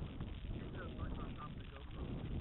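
Low, uneven wind rumble on a small onboard camera's microphone, with faint distant voices in the middle; no motor is running.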